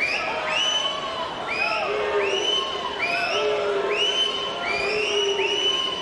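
Spectators cheering a swimming race, with many shrill screams and whoops that rise and then hold, overlapping one after another over a steady crowd roar.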